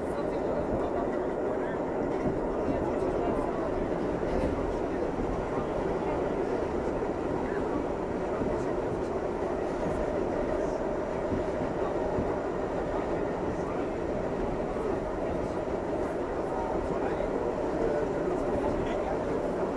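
R68A subway train running through the tunnel, heard from inside the car as a steady rumble of wheels and motors on the rails.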